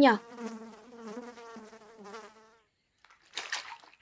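Cartoon sound effect of flies buzzing, a steady wavering drone that fades out after about two and a half seconds. Near the end comes a short splash of water as the fishing line is tugged.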